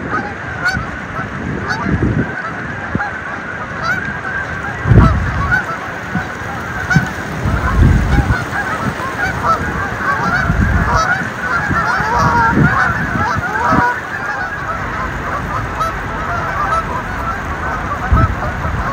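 Flock of Canada geese honking: many short calls overlapping, busiest a little past the middle, with a few low rumbles in between.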